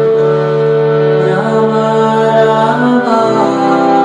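Hand-pumped harmonium playing sustained reed chords and a melody, with the held notes changing about three seconds in. A voice chants along in a devotional kirtan style.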